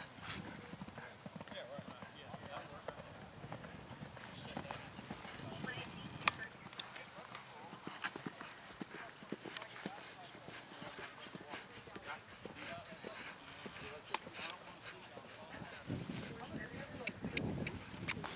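Hoofbeats of a horse galloping across grass turf, an irregular run of dull thuds and clicks.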